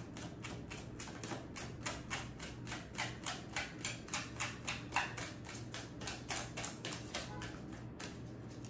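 A deck of tarot cards being shuffled by hand: a quick, even run of soft card slaps at about five a second that stops near the end.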